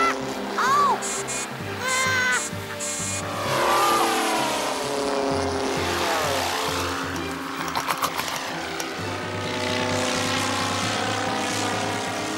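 Buzzing of small model-aeroplane engines, rising and falling in pitch as they swoop past, over background music.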